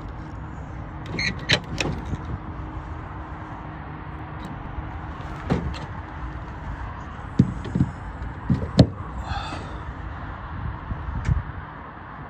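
Tesla Supercharger connector and cable being handled and plugged into a Tesla's charge port: a run of clicks and knocks, the loudest about nine seconds in, over a steady low rumble.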